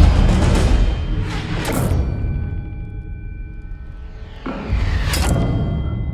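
Dramatic film score with deep drum booms at the start and a sharp hit about two seconds in. A quieter stretch of held tones follows, then heavy drum hits return about five seconds in.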